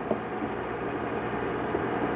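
Steady low hum and hiss of room noise through an old camcorder's microphone, with no distinct event.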